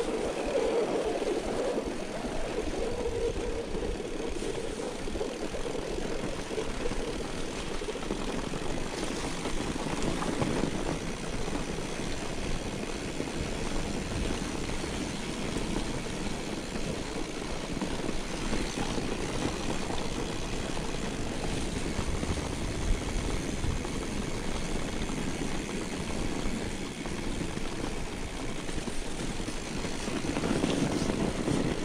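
Mountain bike rolling down a packed-snow track: a steady rushing rumble of tyre noise on the snow mixed with wind on the handlebar camera's microphone.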